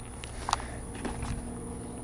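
Quiet outdoor background with faint handling noise from a camera being carried by hand, and a brief small click about half a second in.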